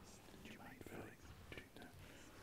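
Faint, hushed whispering voices.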